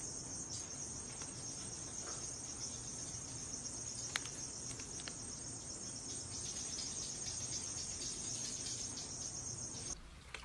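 Crickets chirping in a steady high-pitched trill, with a couple of faint clicks in the middle. The trill cuts off suddenly at the end.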